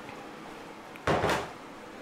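A single brief handling noise, about half a second long, a little after a second in, over low steady room noise.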